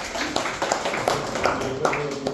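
Audience applauding, many hands clapping irregularly and densely.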